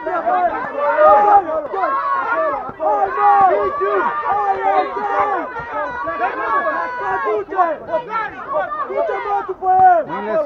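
Several men shouting at once from ringside, loud overlapping calls of encouragement to a fighter during a kickboxing bout.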